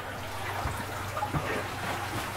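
Water trickling and dripping steadily through an aquaponics vertical grow tower, over a low steady hum.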